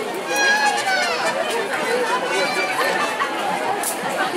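Spectators chatting along a parade route: several indistinct voices overlapping close by, some of them high-pitched, at a steady level.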